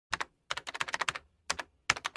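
Computer keyboard typing: quick sharp key clicks in short irregular runs, two, then a run of about eight, then a few more, with silent gaps between.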